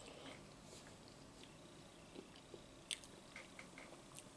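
A man chewing a ham and egg sandwich, faint, with scattered small mouth clicks and one sharper click about three seconds in.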